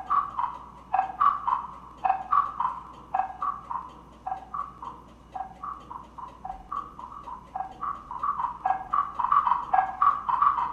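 Slotted wooden blocks struck with yarn mallets in a fast, even rhythm of short knocks on a few different pitches. The figure repeats about once a second and gets louder near the end.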